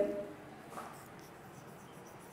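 Faint sound of chalk writing on a blackboard.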